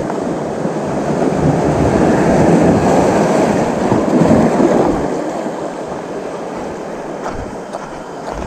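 Waves washing against a rocky shore, a continuous rush that builds two to four seconds in and eases off after about five seconds.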